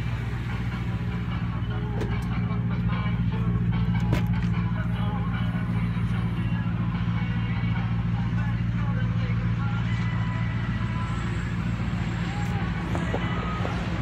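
A vehicle engine idling: a steady, even low hum, with a few faint clicks on top.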